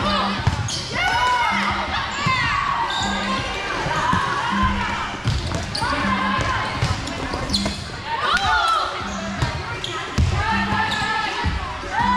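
Indoor volleyball rally in a large hall: athletic shoes squeak sharply and often on the court floor, with the thud of the ball being played and players' voices calling out.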